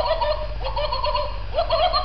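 A plush pig toy's electronic giggle: a run of short, high laughing syllables that starts again about one and a half seconds in.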